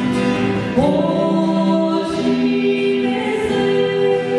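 A woman and a man singing a Catholic hymn in Portuguese to acoustic guitar, with long held notes.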